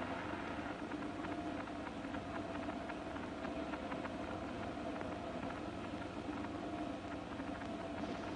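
Steady faint hiss and low hum with a couple of faint held tones. No voices or distinct events.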